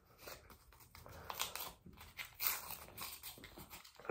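Paper-foil wrapper of an alcohol prep pad being peeled and torn open by hand, a few faint, irregular crinkles and rustles.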